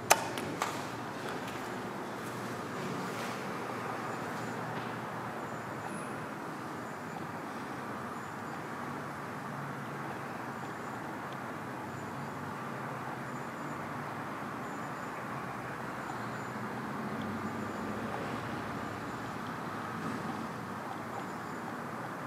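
Steady background room noise in a building lobby, with a small click just after the start as the elevator's up call button is pressed.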